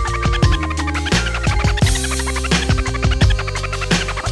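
Hip-hop beat with drums and a steady bass line, with a vinyl record being scratched by hand on a turntable.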